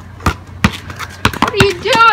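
Basketball bouncing on a concrete driveway: two heavy bounces in the first second, then a few lighter knocks, followed by a boy's shout near the end.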